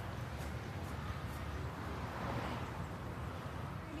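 Quiet outdoor background: a low, steady rumble with no distinct events.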